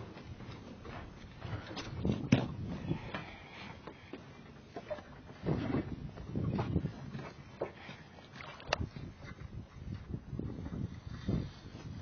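Handling noise from a baitcasting rod and reel worked close to a body-worn camera: irregular scuffing and rubbing, with sharp clicks about two seconds in and again near nine seconds. The rod is making an odd noise whose cause is unknown.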